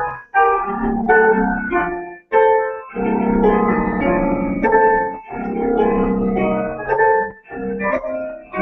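An electronic keyboard played in sustained chords and melodic phrases, with short breaks between phrases: an improvised piece meant to express happiness, heard over a video call.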